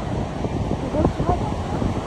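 Loud, steady rush of water from the Niagara Falls rapids and falls, with wind buffeting the microphone.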